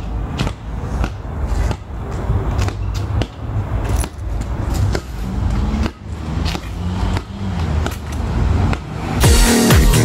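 Outdoor phone audio with a low wind rumble and irregular thuds of a ball being kicked and bounced on pavement. Near the end, loud electronic dance music with a beat cuts in.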